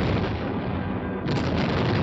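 Action-film explosion and gunfire sound effects, with a fresh blast hitting about a second and a quarter in.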